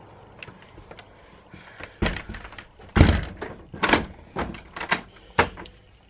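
uPVC balcony door being pushed shut and its lever handle worked to lock it: a run of thunks and clunks, the loudest about three seconds in.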